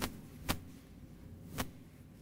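Three short, sharp clicks: one at the start, one about half a second later and one about a second after that.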